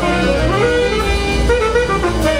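Live jazz quintet improvising: tenor saxophone lines over cello, double bass and drums, with several pitches sliding up and down over a steady low bass.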